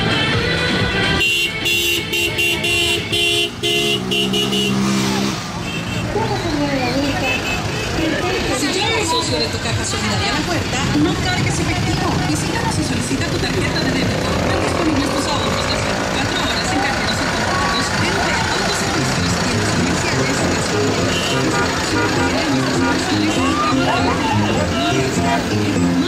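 Street-parade din: loudspeaker music from the floats mixed with people's shouting voices and passing vehicles. Roughly between the first and fifth seconds, a run of steady tones changes pitch in steps, like a horn tune.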